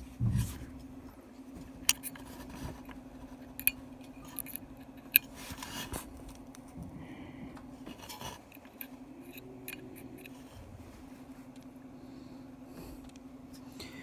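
Opened Seagate Cheetah 15K.7 hard drive spinning its platters at 15,000 rpm: a steady hum over a faint rush of air. A knock just after the start and a few light clicks come through.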